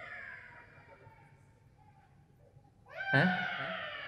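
A man's drawn-out voice. A long vowel fades out with falling pitch at the start, then there is a near-silent pause of about two seconds. About three seconds in comes a long, stretched "hyaan" that rises sharply and then slowly falls in pitch.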